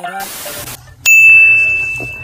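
A brief whoosh of noise, then a single bright bell ding about a second in that rings out and fades over about a second.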